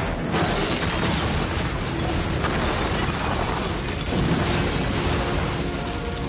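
Film explosion sound effect: a blast breaks in about a third of a second in and carries on as a dense fire-and-blast rumble, with fresh surges about two and a half and four seconds in. Music with steady notes comes back near the end.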